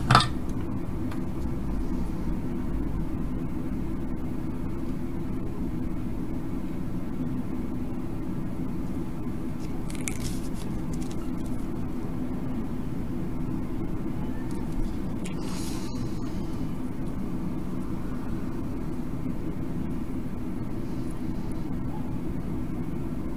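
A steady low hum, as from a fan or motor, runs at an even level throughout. A couple of faint brief scuffs come about ten and fifteen seconds in.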